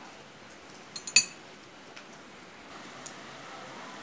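Tableware clinking on a table: a small tap about a second in, then one sharp, ringing clink, and a faint tick near three seconds.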